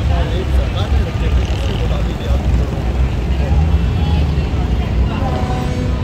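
Speech into a handheld interview microphone over a steady low rumble of street noise.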